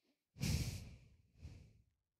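A man exhaling heavily into a close microphone, a sigh-like breath out, followed by a second, shorter and fainter breath.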